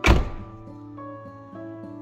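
A single heavy thunk right at the start, its ringing fading over about half a second, over soft background acoustic guitar music that carries on steadily.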